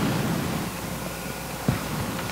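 Pause in speech: steady background hiss of room tone, with one faint click near the end.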